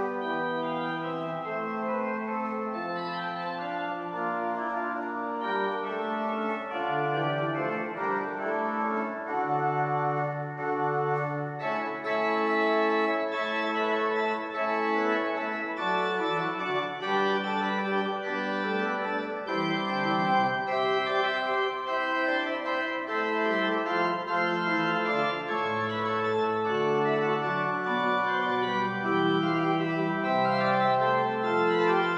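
Pipe organ playing a piece of several moving lines over held bass notes. About twelve seconds in, the sound turns brighter, with more high stops added.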